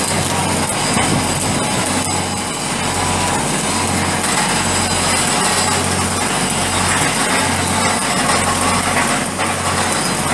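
Stick (shielded metal arc) welding on a steel pipe flange: the arc's steady crackling hiss, with a low hum underneath that swells and dips about once a second.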